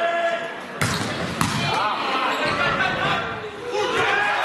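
Volleyball struck hard twice, about a second in and again about half a second later, echoing in a sports hall: the serve and the first touch as a rally opens. Spectators' voices carry on underneath.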